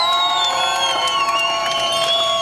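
A crowd of marchers cheering, with several voices holding long, high, steady shouts together.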